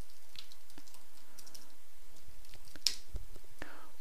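Computer keyboard keys clicking as text is typed: scattered keystrokes with one sharper click about three seconds in, over a faint steady hiss.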